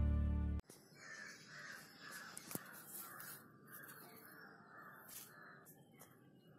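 Guitar intro music that cuts off abruptly in the first second, then a crow cawing over and over, about two caws a second, stopping shortly before the end. One sharp click comes about two and a half seconds in.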